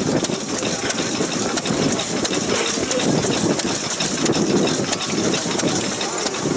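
Large vertical stationary engine running slowly with a regular beat, amid crowd chatter.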